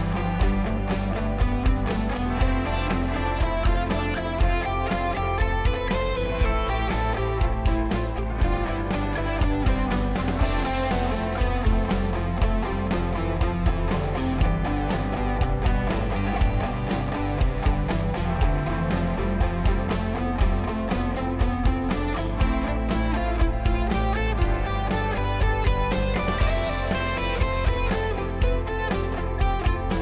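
Electric guitar, a Squier Stratocaster, picking quick single-note runs through the C major scale, climbing and falling in steps in steady time over a C major backing track with a regular beat.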